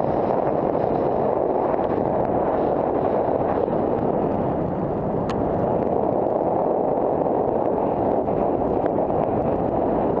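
Steady rush of wind buffeting a helmet camera's microphone, mixed with tyre noise on a dirt trail from a downhill mountain bike ridden at speed. A brief sharp tick about five seconds in.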